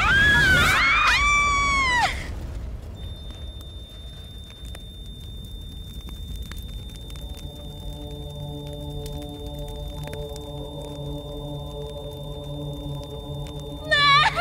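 A woman's high-pitched scream for about the first two seconds, falling in pitch as it ends. Then a steady high ringing tone holds, and soft sustained background music chords come in about halfway.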